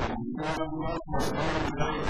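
Continuous speech in Portuguese: a voice talking through a microphone.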